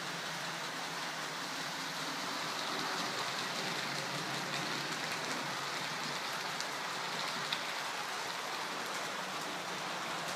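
Model diesel locomotive and its coaches running along the track close past, a steady rushing rumble of wheels and motor that swells slightly as the train comes nearest, about three to five seconds in.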